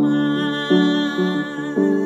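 A woman singing held notes with a keyboard accompaniment, the notes changing about every half second.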